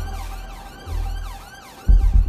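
Ambulance siren on a fast yelp, its pitch sweeping up and down about three times a second, fairly faint over a low drone. A deep bass thud comes in near the end.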